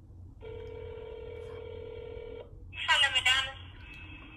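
Telephone ringback tone heard through a mobile phone's speakerphone: one steady ring of about two seconds while an outgoing call waits to be answered. A short burst of voice follows near the end.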